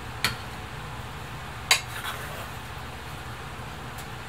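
Two sharp clinks of a serving utensil against a small ceramic bowl as food is spooned into it, the second louder, over a steady low hum.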